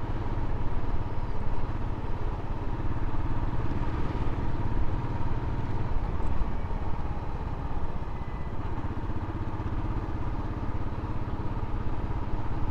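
Motorcycle engine running steadily as the bike is ridden along a road at an even speed, heard from the rider's seat.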